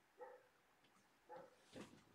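Near silence broken by three faint, brief pitched vocal sounds, the first near the start and two more close together near the end.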